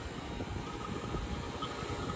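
Fieldpiece vacuum pump running steadily, evacuating a new heat pump lineset through the hoses.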